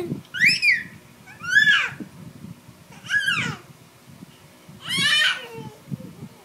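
Baby squealing: four high-pitched calls, each rising then falling, about a second and a half apart.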